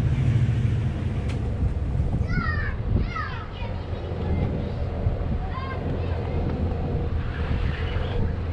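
SUV engine running at a low idle with a steady low hum as the vehicle reverses slowly up to a boat trailer's hitch.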